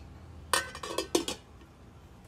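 Stainless steel pot lid clattering against a stainless steel cooking pot: a quick run of sharp metallic clinks with a brief ring, over about a second.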